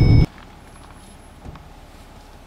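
Low road rumble of a car driving on a gravel road, heard from inside the cabin, with a few thin steady high whines over it. It cuts off abruptly a quarter second in, leaving only a faint hush.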